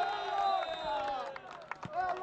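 Voices shouting during play, with one long call that slowly falls in pitch and a few short sharp knocks near the end.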